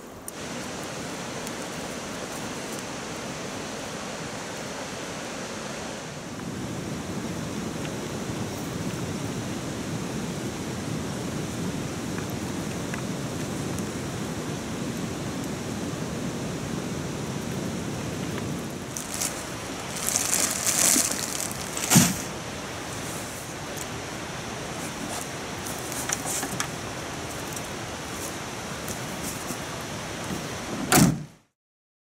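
Steady rushing noise with no pitch, louder from about six seconds in. A few crackling knocks come around twenty seconds in, and one sharp thump about two seconds later.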